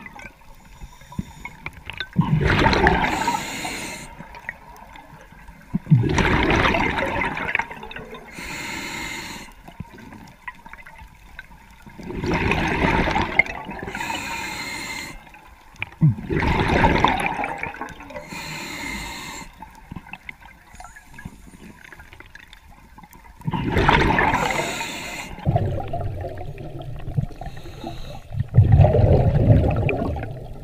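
A diver breathing through a regulator underwater: loud bubbling rushes of exhaled air every few seconds, with fainter breaths in between.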